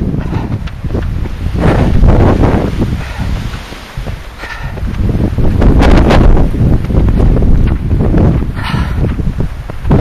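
Wind buffeting the camera's microphone in gusts, a rumbling roar that swells and eases every few seconds, with leaves rustling.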